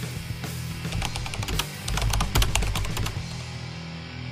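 Background music with a low sustained tone, over which a fast run of keyboard-typing clicks plays from about one second in until just past three seconds.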